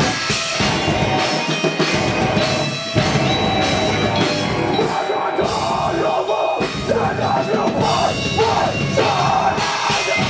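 Metalcore band playing live: distorted guitars, bass and drum kit, with screamed vocals. The bass and kick drum drop out briefly about a second in and again around five seconds in.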